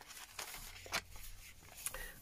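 Paper pages of a handmade junk journal being turned by hand: faint rustles and a few brief flicks of paper about a second apart.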